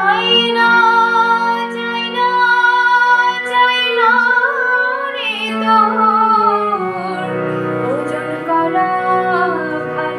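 A woman singing a Bengali song with a melodic voice that bends and glides between notes, over steady, long-held instrumental notes.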